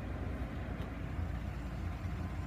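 Steady low hum of an idling vehicle engine.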